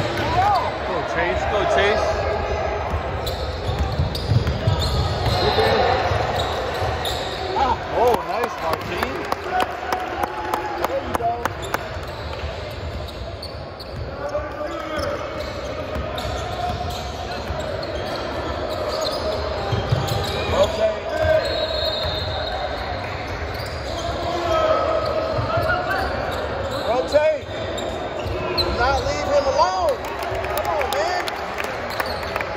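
Basketball game sounds in a gymnasium: a ball bouncing on the hardwood court, sneakers squeaking in short chirps, and voices from players and spectators, all echoing in the large hall.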